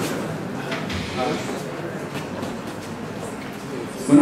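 Indistinct, off-microphone talk over steady room noise in a large room, with no clear voice on the microphone.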